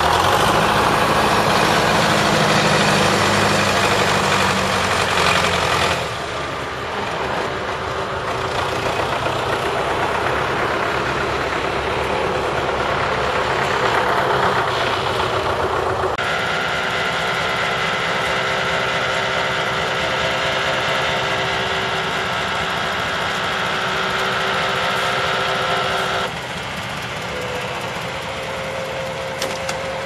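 Engine of a Ural truck fitted with a hydraulic timber crane, running steadily under load while the crane lifts cut pine logs onto its bed. The sound shifts abruptly a few times, with a steadier, higher hum through the second half.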